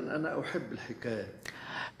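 Quiet speech, fainter than the main talk around it.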